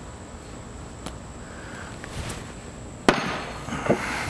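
A Cold Steel Torpedo, a two-pound steel throwing spike, strikes a wooden target once: a single sharp knock about three seconds in, followed by a brief clatter.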